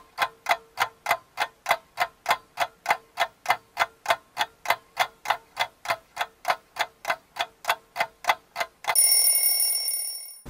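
Countdown-timer sound effect: a clock ticking steadily, about three ticks a second, for a ten-second count. It ends about nine seconds in with a loud ringing tone that fades out.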